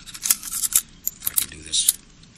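Hands handling small parts: a quick string of sharp clicks and crisp rustles, the last burst near the end among the loudest.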